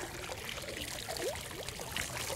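Water pouring and dripping off an old crab-trap rope encrusted with sea squirts and sponge as it is pulled up out of the water, splashing back onto the surface below.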